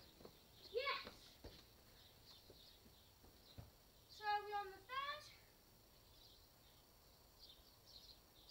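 A child's voice calling out twice from a distance, wordless: a short rising call about a second in, then a longer call around the middle that holds one pitch and then rises.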